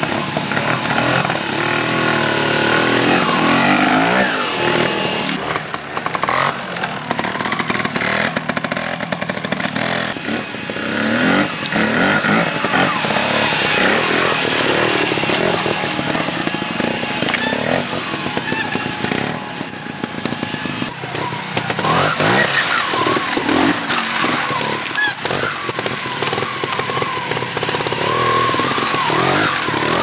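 Trial motorcycle engines revving in repeated short blips, the pitch rising and falling again and again as the bikes are worked over rocks and roots.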